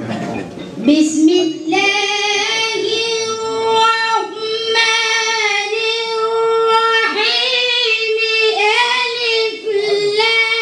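A boy's high solo voice chanting Islamic religious verse in long, drawn-out notes that bend slowly in pitch. It starts about a second in, with short breaks for breath between phrases.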